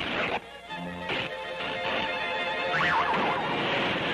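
Cartoon orchestral score mixed with crashing, noisy commotion effects. It starts suddenly, drops out briefly about half a second in, and has a wavering high tone near three seconds in.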